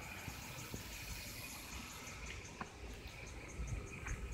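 Faint insects chirping in a high, evenly repeating pulse, several chirps a second, over a low outdoor rumble.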